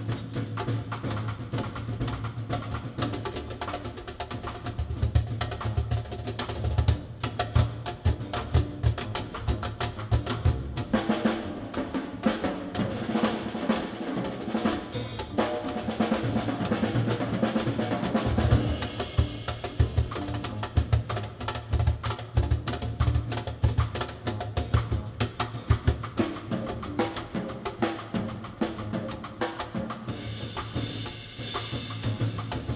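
Live jazz combo: a drum kit played busily with snare, cymbal and bass-drum strokes throughout, with upright bass and guitar underneath.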